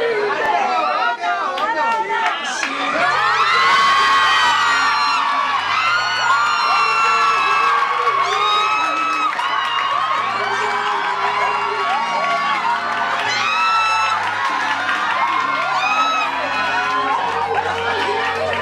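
Audience cheering, whooping and screaming over music that has a steady bass line.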